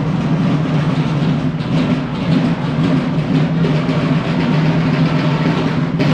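A marching drum corps playing a continuous, rapid drum pattern.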